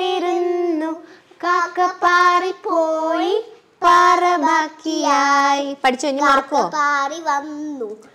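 A young girl singing: a run of long held notes that slide and waver in pitch, broken by short pauses.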